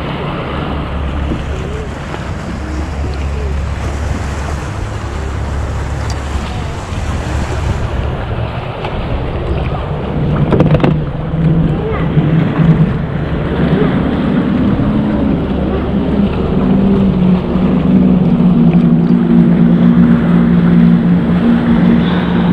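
Boat motor running on the water, with wind buffeting the microphone. About ten seconds in the engine note grows louder and steadier and holds there.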